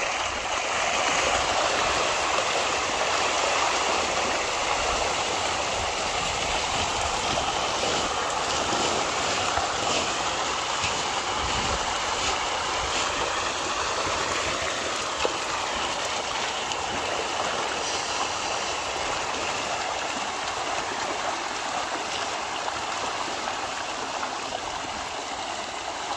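A large shoal of pond fish thrashing and splashing at the surface in a feeding frenzy over floating pellet feed, a dense, continuous splashing that eases slightly toward the end.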